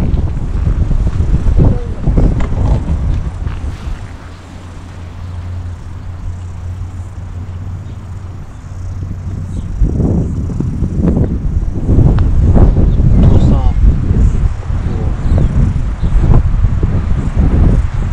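Wind buffeting the microphone, a low rumble that eases off for a few seconds and then picks up again, with indistinct voices in the second half.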